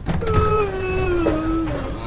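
Sliding train door opening in an animation sound effect: a click, then a whine that falls slowly in pitch for nearly two seconds.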